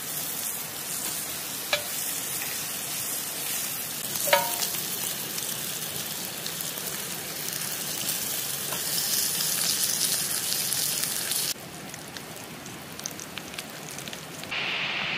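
Bacon sizzling steadily in a cast iron grill pan, with two sharp clinks, about two and four seconds in, the second ringing briefly. The sizzle drops quieter near the end.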